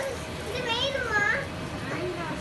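Children's voices: high-pitched child speech and play sounds, with the highest and loudest voice a little past halfway through.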